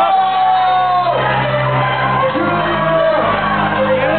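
Loud live hip-hop music: a bass-heavy beat with a voice shouting and singing over it.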